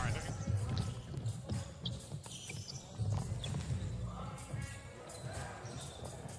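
Basketball being dribbled on a hardwood court: a run of dull bounces under faint background voices and arena sound.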